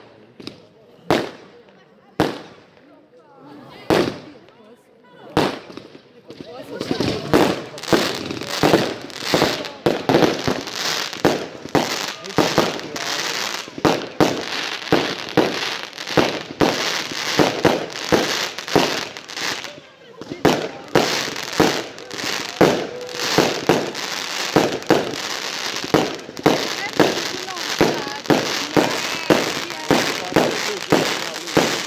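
Aerial fireworks going off: a few single bangs about a second apart, then from about six seconds in a dense, continuous run of rapid bangs and crackle.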